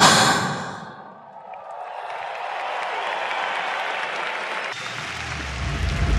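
A song's final hit rings out for about a second, then an arena crowd cheers and applauds. Near the end a low bass note comes in.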